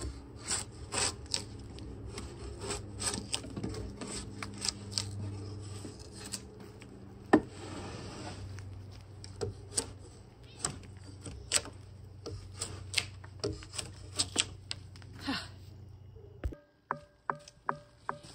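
Drawknife blade shaving bark and wood off a log in short, irregular scraping strokes, with one sharp knock about seven seconds in. A steady low hum sits underneath, and the strokes stop shortly before the end.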